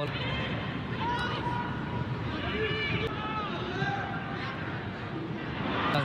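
Football stadium ambience from a live match broadcast: a steady wash of ground noise with scattered distant shouts from the pitch and stands.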